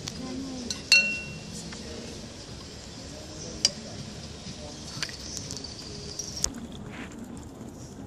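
Glass parts of a Hario siphon coffee brewer clinking and knocking as they are handled and taken apart. One sharp clink about a second in rings briefly, and a few lighter knocks follow.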